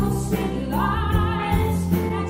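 Live Americana band playing: a woman sings over acoustic guitar, electric guitar and bass guitar, with a steady beat. Her voice slides up into a held note a little under a second in.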